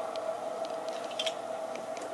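A few small clicks and ticks of metal pliers handled while pulling a needle and cord through drilled bone beads, with a cluster of clicks about the middle. A steady hum runs underneath.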